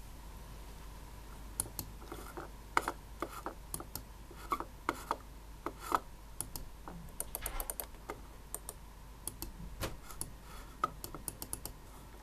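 Buttons of a Logitech Portable TrackMan handheld trackball clicking: many short, sharp clicks at uneven spacing, starting about a second and a half in and coming in quick clusters around the middle.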